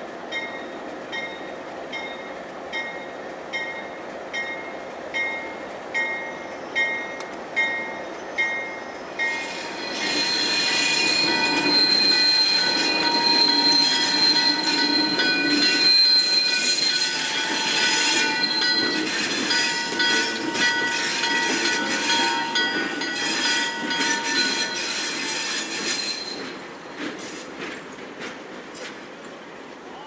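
A diesel locomotive's bell rings steadily, a little over once a second, for the first nine seconds. Then diesel locomotives pass close by, loud for about sixteen seconds, their wheels squealing in long high tones, before the sound eases off near the end.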